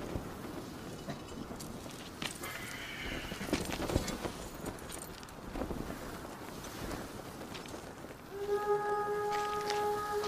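Film battlefield soundscape of a mounted army: horses stirring, with scattered hoof knocks and small clinks over a low rushing background. About eight seconds in, a single sustained note from the music score comes in and holds.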